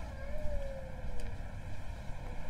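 Street traffic ambience: a steady low rumble of vehicles, with one vehicle's engine note gliding down in pitch as it passes, in the first second.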